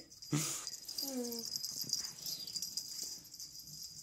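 Small dogs scampering in a play chase, with a brief noisy burst just after the start and a short, slightly falling pitched vocal sound about a second in. A steady high hiss lies underneath.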